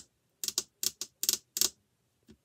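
Computer keyboard keys being pressed: a string of about eight short, sharp clicks, many in close pairs, with brief silences between.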